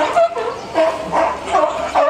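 California sea lion calling, a run of short pitched barks repeated about twice a second.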